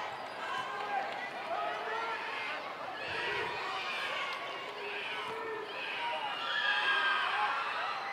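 Arena crowd hushed for a free throw: a low murmur of many scattered voices, with no single voice standing out.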